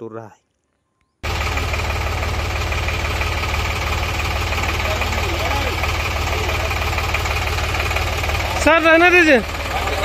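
Diesel tractor engine idling steadily, starting about a second in, with a man shouting loudly near the end.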